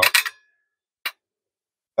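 A single sharp click about a second in: the T/R switch's relay snapping over as the hand-held ground wire touches the connector, the contact bouncing because the wire isn't pressed down firmly.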